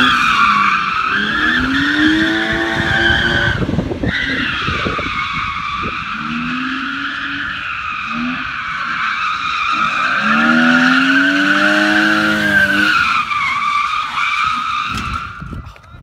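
BMW E36 sedan drifting: its tyres squeal in a long, wavering squeal while the engine revs climb and drop beneath it. The squeal breaks off briefly about four seconds in, picks up again, and fades out near the end.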